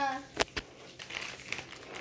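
Soft crinkling and rustling of handled packaging, with two sharp clicks about half a second in.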